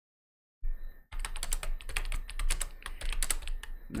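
Typing on a computer keyboard: after about half a second of dead silence, a fast, irregular run of key clicks that goes on without a break.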